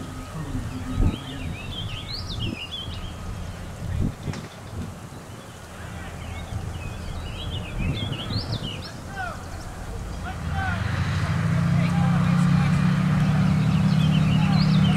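M4 Sherman tank's engine running with a low rumble while birds sing, with a couple of knocks early on. About ten seconds in, the engine sound grows much louder and steadier.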